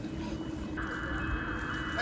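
Outdoor ambient noise: a low rumble with a faint steady hum. About a second in, a steady hiss joins it.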